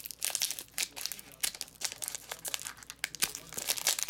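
Foil trading card pack crinkling in the hands as it is pulled open: a quick, irregular run of crackles.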